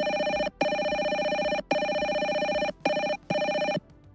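GoTo softphone incoming-call ringtone: an electronic ring in pulses of about a second with brief breaks, the last two shorter. It cuts off shortly before the end as the call is answered.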